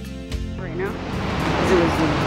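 Background music breaks off shortly in and gives way to a steady rushing noise of wind and rough surf from a stormy sea, growing louder toward the end.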